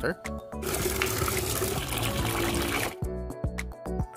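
Tap water pouring into a cut-open plastic bottle, filling it: a steady splash of water that starts about half a second in and stops a second before the end, over light background music.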